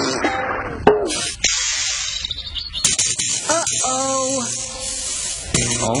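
A cartoon hissing sound effect broken by a few sharp clicks, followed by a short run of pitched, wavering notes of background music.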